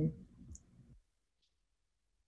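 The last word of a woman's speech, then a single faint computer-mouse click about half a second in, followed by near silence with a few very faint ticks.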